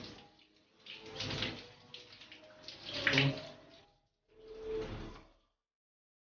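Running water in a bathroom, coming in three surges of spray and then cutting off suddenly a little over five seconds in.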